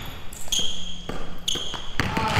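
Basketball being dribbled on a hardwood gym floor, with sharp bounces and short high sneaker squeaks.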